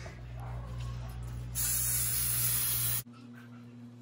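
A loud, even hiss that starts sharply about a second and a half in and is cut off abruptly a second and a half later, over a low steady hum.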